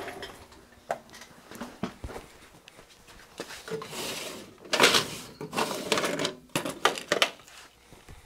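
Off-camera rummaging through bench supplies in search of solder paste: scattered clicks and knocks of small objects being moved, then several louder bursts of clattering and rustling in the second half.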